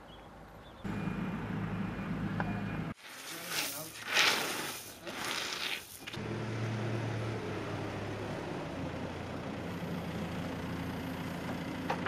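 Construction machinery engine running with a steady low hum. It breaks off about three seconds in for roughly three seconds of loud, rough scraping noise, then the hum returns.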